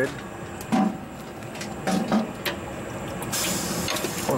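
Vincent KP6 screw press running steadily at slow speed while dewatering sewage sludge, its discharge cone held open, with a burst of hissing near the end.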